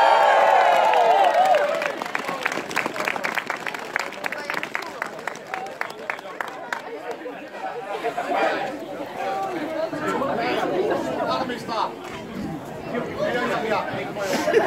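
A group of men giving a loud drawn-out cheering shout, then a run of rhythmic claps about three a second for several seconds, then crowd chatter.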